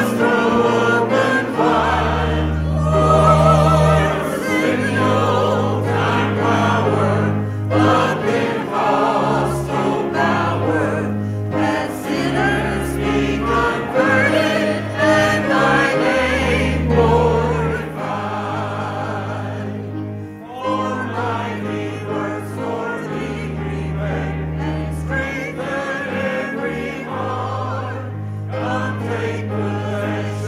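Church choir singing a hymn together with instrumental accompaniment, its bass notes held for a second or two each.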